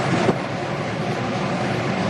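School marching band of brass, sousaphones and drums playing together, a dense sustained band sound with one sharp drum hit about a third of a second in.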